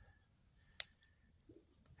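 A quiet pause broken by a few faint, sharp clicks: one about a second in, another just after, and a third near the end.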